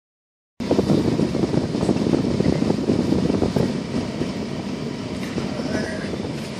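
Irregular low rumble and rattle inside a pickup truck's cab. It starts abruptly after a short silence and eases off over the next few seconds.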